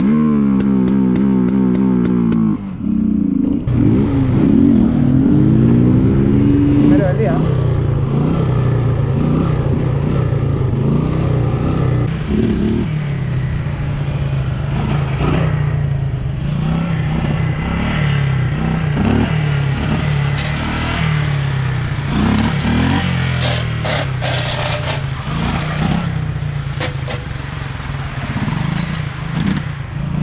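Small street motorcycle engines running and revving, their pitch rising and falling as the throttle is worked. The sound changes abruptly near the third second. A run of sharp clicks and crackles comes in the second half.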